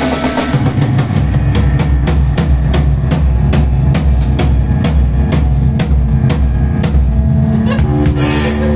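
Live rock band playing, with the drum kit foremost: even, driving hits about three a second over a sustained bass and electric guitar.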